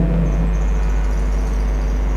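Steady low electrical hum with faint background hiss, and a faint high thin whine from about half a second in.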